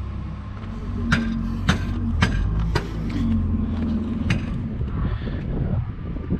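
Forklift and idling diesel engines running at a steady low rumble, with a hum that holds for a second or so twice. Five sharp metal clanks come about half a second to a second apart as freight is handled onto the flatbed trailer.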